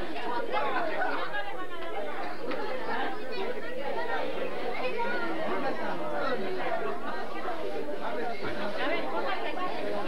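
Many people talking at once: a steady hubbub of overlapping voices with no single speaker standing out.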